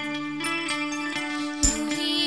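Small live band playing an instrumental passage: held keyboard chords with plucked guitar notes, and one low drum stroke near the end.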